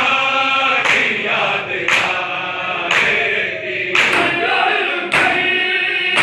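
A chorus of men chanting a noha, a mourning lament, with hands slapping bare chests in unison (matam) about once a second.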